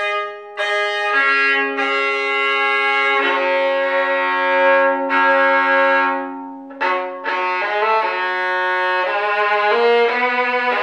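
Solo violin played with the bow, an antique instrument offered as the work of Jacques Boquay of Paris. It plays a slow phrase of long held notes, then a sharp new bow stroke about seven seconds in, followed by quicker notes.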